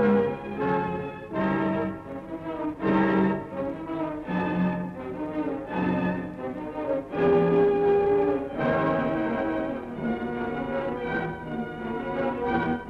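Orchestral film score led by brass, playing a run of heavy accented chords, with one chord held longer just past the middle.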